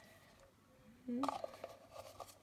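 Near silence for about a second, then a brief rising vocal sound and a few faint clicks of a plastic water cup and its lid being handled.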